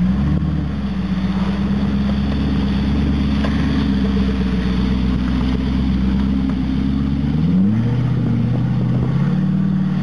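Jeep Grand Cherokee's engine running steadily as it drives past, then revving up about three-quarters of the way through, dropping back briefly and rising again as it accelerates away.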